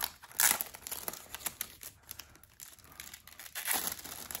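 Crinkling plastic packaging being handled to open a CD release, in irregular bursts with sharp crackles: the loudest about half a second in, another shortly before the end.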